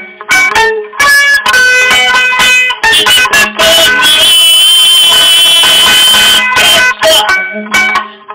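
Acoustic tzoura (a Greek long-necked lute that sounds like a folk mandolin), played unamplified in short, choppy chord strokes with brief gaps between them. About halfway through, one chord is left to ring for a couple of seconds.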